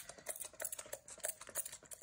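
Small hand-pump mist spray bottle spritzing water over the pans of a watercolour palette to wet the paints, a quick run of short, faint clicking sprays.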